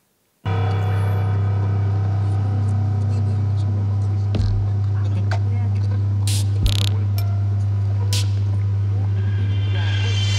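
Electronic sound design from a film soundtrack: a loud, steady low drone held at one pitch, starting about half a second in, with a few soft clicks and thuds and a short hiss about six and a half seconds in. A higher buzzing layer swells toward the end.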